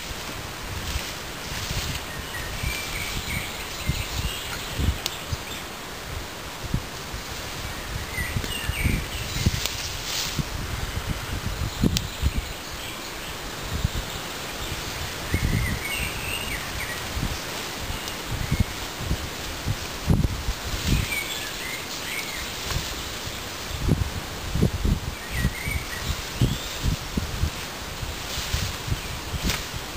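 Leafy branches rustling as they are handled and laid onto a shelter frame, in several bursts, with low thumps throughout and a few short bird chirps.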